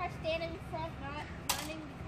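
Children's voices talking indistinctly, with one short sharp knock about one and a half seconds in.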